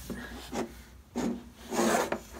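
Three short rubbing, scraping sounds from a toddler shuffling about close to the microphone, with a small wooden toy in his hand.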